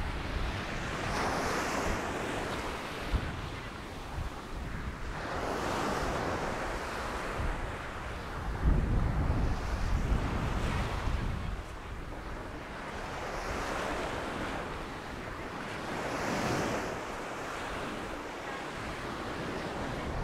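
Small Mediterranean waves breaking and washing up a sandy shore, the surf swelling and fading every few seconds. Wind buffets the microphone, strongest about halfway through.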